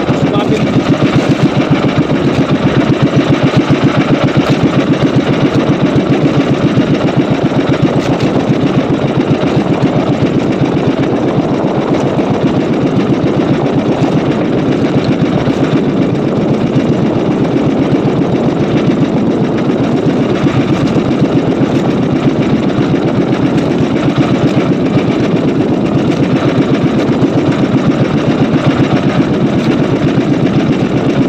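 Small motor-driven outrigger boat's engine running steadily at a constant speed, with a rapid, even beat.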